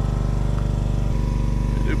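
An engine idling steadily with an even, fast beat, running again just after the crew got it to fire up following a breakdown.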